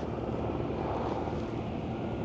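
Large crawler bulldozer's diesel engine running steadily as it pushes dirt.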